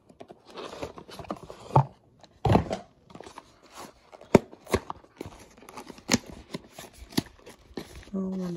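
Cardboard packaging being handled: a white product box and its pieces rustling and scraping, with several sharp taps and knocks.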